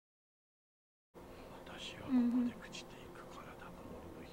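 Dead silence for about a second, then a low, near-whispered voice speaking in Japanese, with one louder held syllable about two seconds in.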